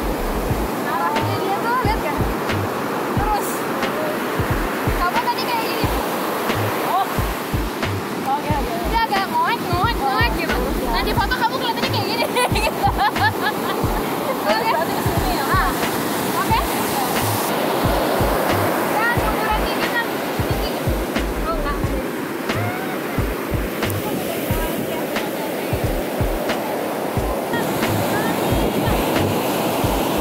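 Ocean surf breaking and washing up the beach in a steady rush, with wind buffeting the microphone in frequent low rumbles.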